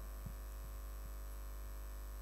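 Faint, steady electrical mains hum from the microphone and sound system.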